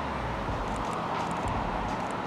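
Steady street traffic noise from passing cars.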